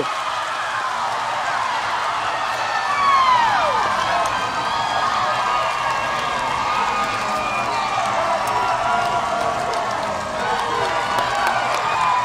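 Stadium crowd cheering and applauding a home run: a steady mass of voices and clapping, with one falling shout standing out about three seconds in.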